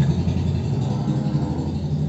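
A low, steady engine-like rumble.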